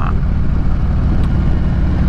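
2015 Harley-Davidson Street Glide Special's V-twin engine running steadily while the motorcycle cruises along a winding road.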